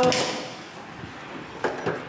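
A door knob and latch being turned and the door pulled open. There is a burst of noise as it starts to move, then a few short knocks and a brief rub about a second and a half in.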